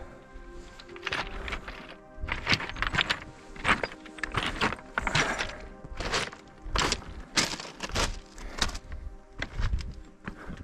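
Boots crunching and knocking on loose scree and rock in a steady run of steps, about two a second, over quiet background music.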